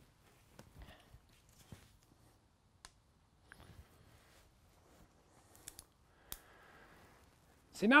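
Scattered faint clicks and small knocks from a compound bow and arrow being handled as the bow is loaded for a shot, with one sharper click near the end.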